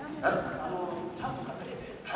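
A man's voice delivering stage lines in short, drawn-out phrases, the stylized speech of a masked kagura performer.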